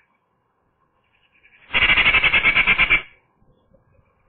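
Eurasian magpie giving its harsh chattering rattle, a rapid run of about ten notes a second. It starts a little under two seconds in and lasts over a second.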